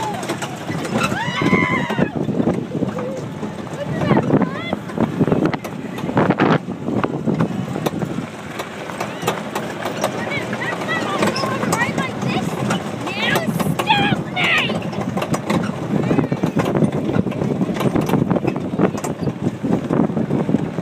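Young children squealing and laughing on a bumpy ride, over the steady rumble and rattle of a tractor-pulled barrel train rolling across dirt. The high squeals come near the start and again about two-thirds of the way through.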